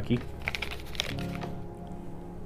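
A wrapped snack bar's packaging crackling in a quick run of small clicks as it is handled and turned over, mostly in the first second. Soft background music with long held tones plays underneath.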